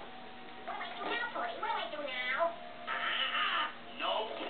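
Wordless cartoon vocal sounds played through a TV speaker: high, sliding cries, then a short rough hiss about three seconds in.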